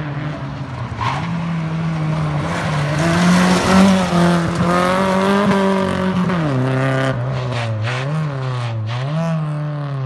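Opel Corsa rally car's 2.0-litre C20NE four-cylinder engine held at high revs as the car approaches and passes at speed, loudest about four seconds in. After about six and a half seconds the pitch drops, then the revs rise and fall again and again as the car drives away.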